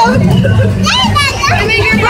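Excited children's voices, high squeals and shouts, over background music with a steady low hum.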